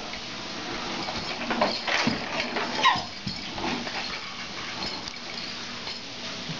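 A baby in a wheeled plastic baby walker rolling over a hardwood floor, with short vocal squeals from the baby that fall in pitch, the loudest about two and three seconds in.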